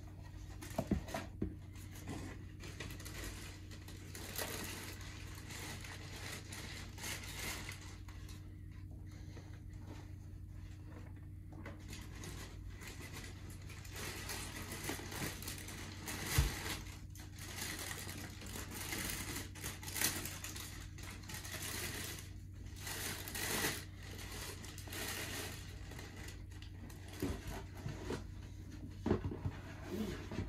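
Tissue paper rustling and crinkling as it is handled inside a cardboard shoebox, with intermittent scrapes and a few sharp knocks of the box and shoe. A steady low hum runs underneath.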